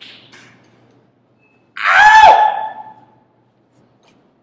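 A loud, high-pitched vocal cry lasting about a second, starting near the middle, its pitch dropping at the end.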